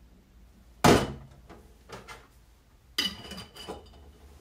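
Glass jars set down in a stainless steel sink basin: two sharp knocks, about two seconds apart, the second leaving a brief glassy ring.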